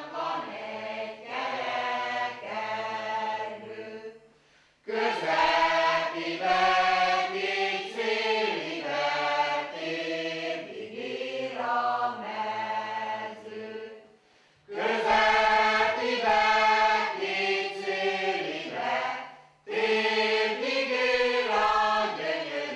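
Mixed choir of men and women singing a traditional Hungarian folk song unaccompanied, in long held phrases. There are short breaks between phrases about four and a half, fourteen and a half and nineteen and a half seconds in.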